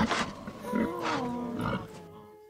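An animal-like vocal sound whose pitch glides at first, then holds steady and fades toward the end.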